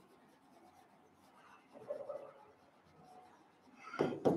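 Faint stylus writing on the glass of an interactive display board: soft strokes and rubbing as a word is written, with a slightly louder patch about two seconds in.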